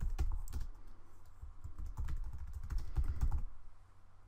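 Typing on a computer keyboard: a quick, uneven run of keystrokes that stops about three and a half seconds in.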